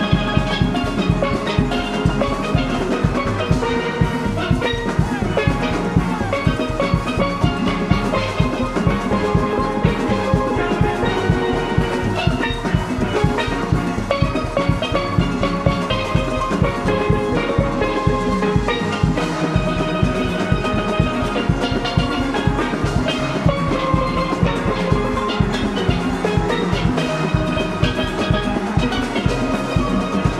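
Steel orchestra playing: many steel pans ringing out melody and chords together over a steady, even percussion beat.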